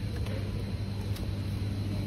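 Shopping cart rolling along a supermarket aisle floor, giving a steady low rumble over the store's constant background hum.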